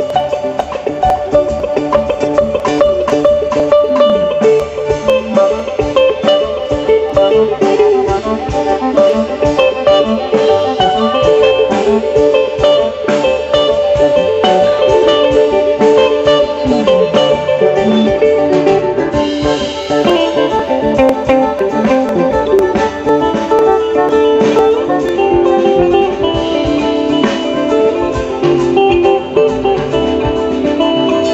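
Live bluegrass jam band playing an instrumental jam, with fiddle, electric and acoustic guitars and a drum kit keeping a steady beat.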